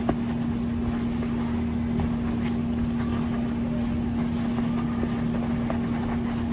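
Steady mechanical hum with one constant low tone over an even background noise, with a couple of faint taps.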